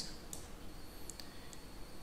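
A few faint, scattered clicks of a stylus tapping on a tablet while handwriting.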